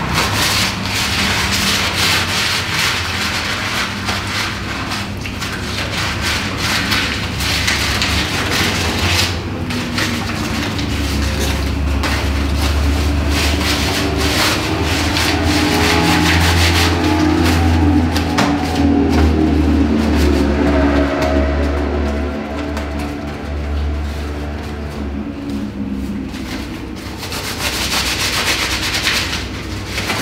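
A loud, harsh rushing and scraping noise over a steady low hum. From about ten seconds in, slowly wavering tones swell beneath it and fade again near the end, like an eerie ambient drone.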